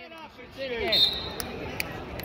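Sharp knocks echoing in a gym, a few in the second second, with a brief high squeak about a second in, under a shouted voice.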